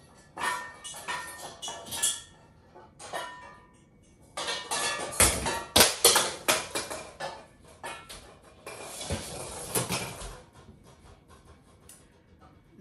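Kitchen utensils clinking and rattling as a small whisk is taken down from a rack of hanging utensils. A few ringing metallic clinks come in the first couple of seconds, then a longer run of knocks and clatter from about four seconds in until near the end.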